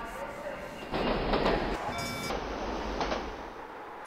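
Subway train running through a tunnel, from the music film's soundtrack: a noisy rumble that swells about a second in, with a brief high ringing tone about two seconds in.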